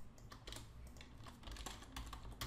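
Faint computer keyboard typing: a scattered run of short keystrokes, as a node name is typed into a search menu.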